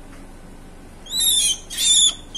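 Black-winged myna (jalak putih) giving two harsh squawks, the first about a second in and the second near the end, while held in the hand.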